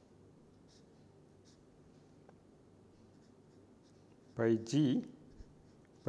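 Felt-tip marker writing on paper: a few faint, short strokes over a low steady hum.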